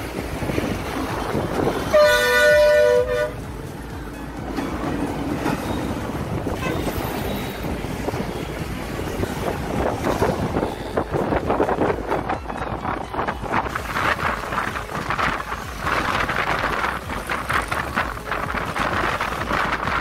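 Ride noise inside a moving city bus, with one loud two-note vehicle horn blast about two seconds in, lasting just over a second.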